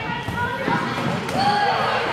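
Children's voices calling out over the thumps of a soccer ball and running feet on a hardwood gym floor, echoing in the hall.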